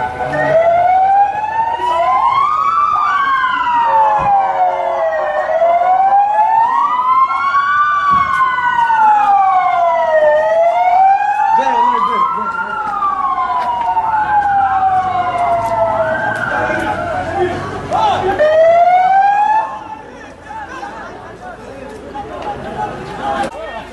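Several emergency-vehicle sirens wailing at once, each slowly rising and falling in pitch over a few seconds and overlapping out of step. They cut off a couple of seconds before the end.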